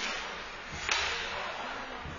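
Steady hiss of an indoor ice rink during a hockey game, with one sharp crack just under a second in, from a stick or puck strike in the play.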